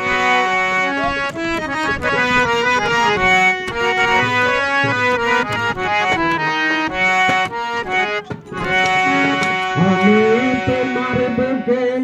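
Harmonium playing a melody of changing held reed notes, backed by drum strokes. A singing voice comes in near the end.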